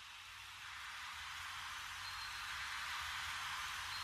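Faint static-like hiss with a low hum beneath, slowly swelling louder: the noise fade-in that opens the track's instrumental before the beat comes in.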